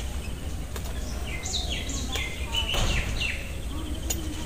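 A bird calling a quick run of high, falling notes from about a second and a half in, over a steady low rumble, with a couple of sharp clicks.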